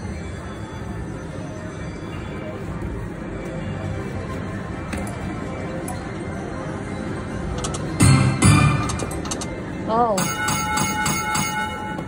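Lotus Land video slot machine playing its free-games bonus over steady casino background sound, with a loud short burst about eight seconds in. Near the end the machine sounds a chiming jingle of repeated steady tones with even clicks as it awards five more free games.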